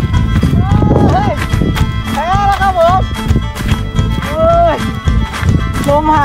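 Background music with a steady beat and a melody line that slides up and down in short phrases.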